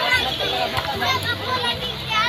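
Crowd of children playing, with many young voices talking and calling out over one another.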